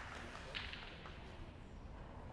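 Quiet ice-rink room tone as the audience's applause dies away, with a couple of last sharp claps about half a second in.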